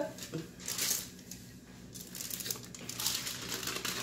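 Aluminium foil crinkling and crackling as it is handled and peeled away from a rolled pie crust, in two spells with a quieter moment in the middle.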